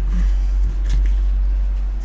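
A steady low hum with a few faint taps of a tarot deck being handled and squared in the hands.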